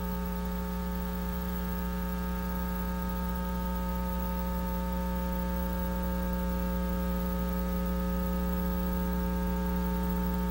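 Steady electrical mains hum with a stack of overtones and a faint hiss under it, unchanging throughout: the sound of a blank stretch of videotape.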